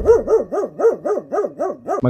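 A small dog yapping rapidly, about five short barks a second, each bark rising then falling in pitch.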